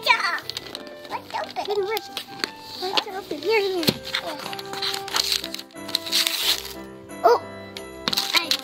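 Gift wrapping paper rustling and tearing as a present is ripped open by hand, under steady background music and a child's voice.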